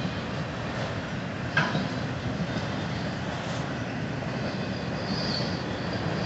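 Freight cars rolling past on the rails with a steady rumble of wheels on track and a single knock about one and a half seconds in. A faint high-pitched wheel squeal starts near the end.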